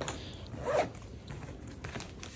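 Zipper on a soft fabric suitcase being run along in short rasping strokes, the loudest just before a second in.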